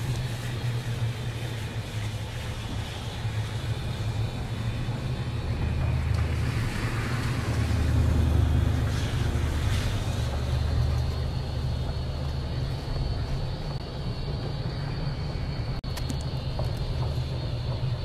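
Car running, heard from inside the cabin: a steady low rumble of engine and road noise that swells a little about halfway through.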